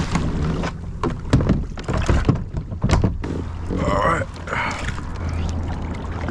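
Knocks and thumps on a plastic pedal-drive fishing kayak's hull and fittings as a person climbs aboard and settles into the seat, over a steady low rumble. A short vocal sound comes about four seconds in.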